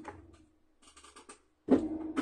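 Small handling sounds of crafting tools on a table: faint rubbing and light clicks, then a sudden thump near the end as the stamp platform is moved.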